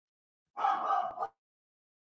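A dog barking, one short burst of under a second starting about half a second in: alarm barking at someone seen at the front door.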